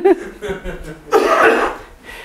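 A woman's laugh trailing off, then a short, breathy laugh about a second in.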